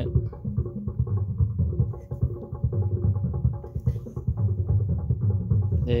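Music playing with a steady beat, heavy in the bass and low mids, with the treble almost absent.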